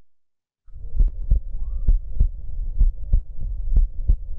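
Recorded stethoscope heart sounds: a regular two-part heartbeat (lub-dub), a little faster than one beat a second, beginning under a second in. The rhythm is regular and the heart sounds normal, with no murmur and no pericardial friction rub.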